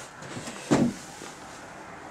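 A single short knock about three-quarters of a second in, amid faint handling noise.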